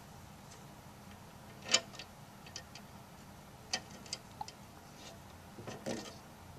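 Small irregular clicks and taps of metal lead posts being pushed into the drilled holes of the terminal strips on the case lid. The sharpest click comes a little under two seconds in, with a cluster of softer taps near the end.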